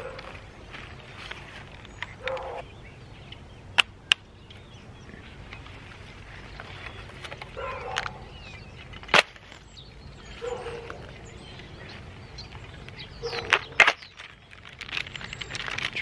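Sharp clicks from a Polaroid pack-film Land Camera being worked by hand: a pair about four seconds in, a single click about nine seconds in, and a few more near the end. Faint short calls sound now and then in the background.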